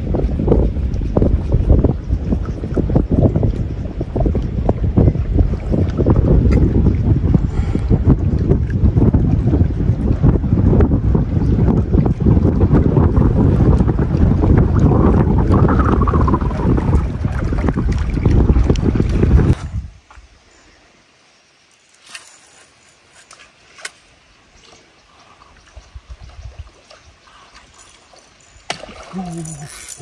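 Wind buffeting the microphone: a loud, steady low rumble for most of the first twenty seconds that cuts off suddenly. After that it is much quieter, with faint scattered clicks, and a voice comes in near the end.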